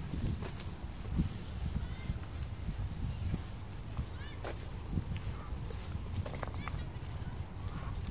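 Footsteps on a brick path while walking, a scattering of short steps over a steady low rumble.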